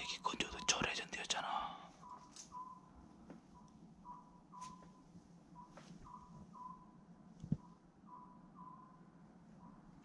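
A person whispering for about the first two seconds, then a quiet room with faint scattered clicks.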